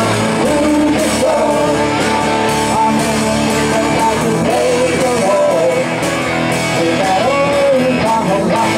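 Live rock and roll band playing, with electric guitars and a drum kit amplified through PA speakers.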